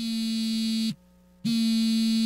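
A phone ringing with a low, buzzy electronic tone, in two rings of about a second each with a half-second gap between them.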